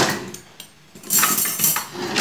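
Kitchen clatter of dishes and cutlery being handled, with a short knock at the start and a longer burst of rattling from about a second in.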